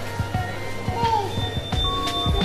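Background music with short melodic notes.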